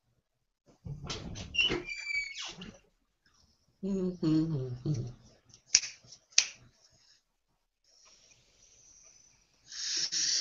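A man's voice with a short laugh, then two sharp clicks like finger snaps, under a second apart.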